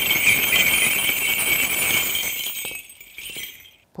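Korean shaman's brass bell rattle (bangul), a cluster of small bells on a handle, shaken steadily in a continuous jingling, as a call to the spirits before a divination. The jingling dies away over the last second or so.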